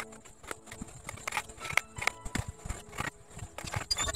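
Carving chisel being struck into a wooden block: a quick, irregular run of sharp knocks, about three a second. Background music plays under the knocks.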